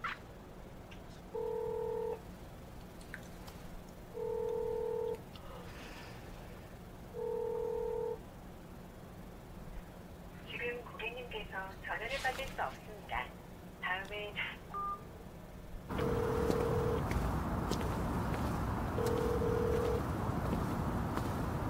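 Telephone ringback tone heard through a phone handset: a steady beep of about a second, repeating every three seconds while the call rings unanswered. Midway, a recorded voice message cuts in because nobody picks up. Near the end the ringing beeps resume over a louder, steady background noise.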